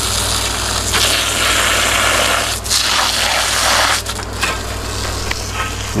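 Water spraying from a garden hose nozzle onto potted herbs, a steady hiss that grows louder between about one and four seconds in. A steady low air-conditioner hum runs underneath.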